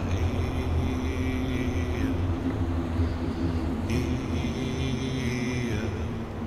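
Ambient meditation music built on a low rumbling drone with steady held tones above it. A high shimmering layer comes in twice, each time for about two seconds, and slides down in pitch as it ends.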